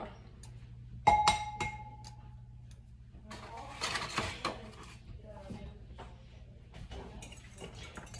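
Eggs being cracked into a glass bowl and beaten with a fork. About a second in there is a sharp knock on the glass that rings briefly, followed by scattered small clicks and clinks.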